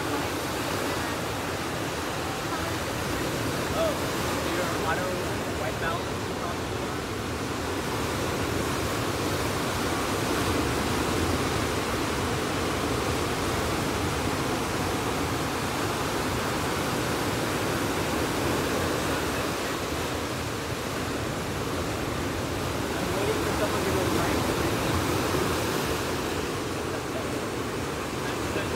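Ocean surf breaking and washing up a sandy beach: a steady rushing noise that swells a little twice as waves come in.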